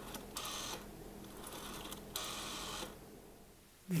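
Rotary telephone dial being turned and spun back, its return making a short whirring click-train twice: once about a third of a second in, and a longer run a little after two seconds.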